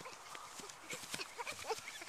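A child rolling down a grassy slope: body and clothes brushing and bumping over the grass, with short faint vocal sounds from her in the second half.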